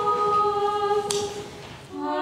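Orthodox church choir singing a held chord a cappella, fading away near the end. A single sharp knock sounds about a second in.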